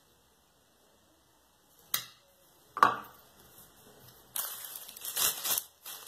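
Two sharp clicks, the second one louder, followed by a clear plastic bag crinkling and rustling as it is handled.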